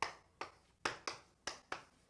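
Quiet, sharp taps of a writing implement striking the writing surface as an expression is written out, about six irregular taps in two seconds, each dying away quickly.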